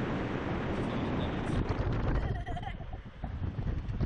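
Wind rushing over the microphone of a camera mounted on a Slingshot ride capsule as it swings through the air. The rush eases about two seconds in, and a rider's short voiced cry comes through.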